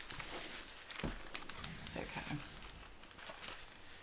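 Plastic film covering a diamond painting canvas crinkling and crackling as the large canvas is handled and turned sideways. It is busiest in the first couple of seconds, then dies down.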